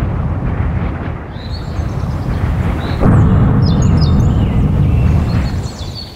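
A deep rumbling rush of noise, growing louder about three seconds in, with faint high creaks and squeaks over it, fading near the end.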